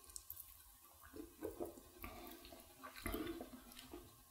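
Faint sounds of beer being drunk from glass bottles: a few soft gulps and sloshes of liquid, spread out between quiet stretches.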